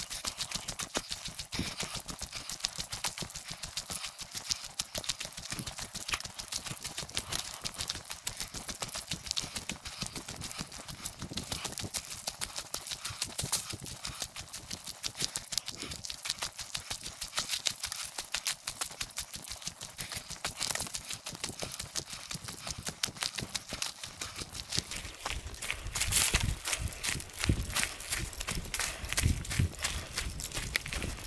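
Footsteps on a forest trail of dry leaves and pine needles, sped up fourfold so the steps run together into a fast, dense patter, louder near the end.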